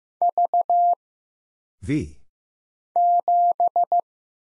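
Morse code sent as a steady single tone near 700 Hz at 15 words per minute. Near the start it keys the letter V (three dits and a dah). Near the end it keys the figure 7 (two dahs and three dits).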